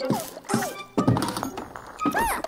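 Cartoon background music with sudden thunk sound effects about three times, each followed by a short falling-pitch sound.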